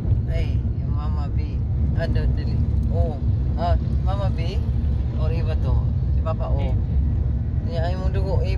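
Steady low rumble of a moving car heard inside the cabin, with people talking over it.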